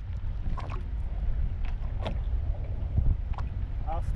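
Wind buffeting the microphone on a small open boat: a steady low rumble with a few scattered sharp clicks and knocks.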